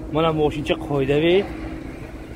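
A person talking for about a second, over a steady faint hum and a low rumble.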